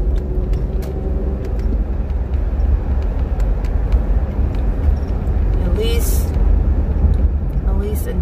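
Steady low rumble of a car's engine and road noise heard inside the cabin while driving, with a brief hiss about six seconds in.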